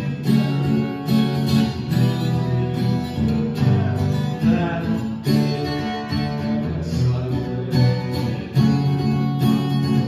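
Acoustic guitar played solo, chords struck in a steady rhythm.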